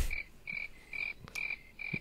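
Edited-in animal chirping sound effect: a short high chirp repeated evenly about twice a second over an awkward silence, with a sharp click at the start.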